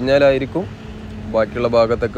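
A man speaking in Malayalam, in two phrases with a short pause between them, over a steady low vehicle hum.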